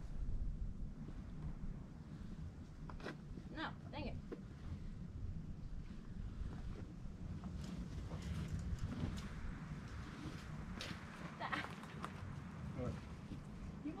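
Wind rumbling on the microphone, with faint distant voices and a few small clicks.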